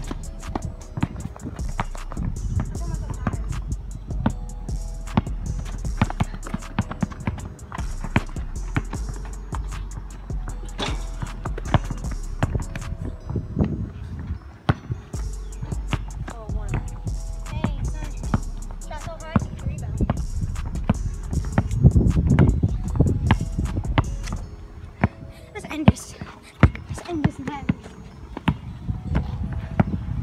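A basketball being dribbled and bounced on a hard outdoor court, with irregular sharp thuds throughout, along with running footsteps. Music and voices sound underneath.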